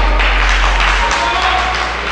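An audience clapping fast, with a few shouts, over background music that has a deep bass; the bass drops away about a second in.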